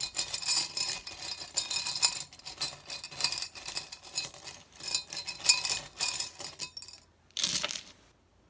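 Small charms (sea glass, marbles, buttons and coins) clinking and rattling against each other and a glass jar as a hand rummages through them. A short louder rattle comes near the end as a handful is dropped onto the cards.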